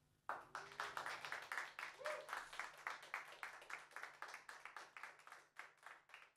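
Hand clapping from a small group of people, starting abruptly just after the song's last note has faded and thinning out towards the end.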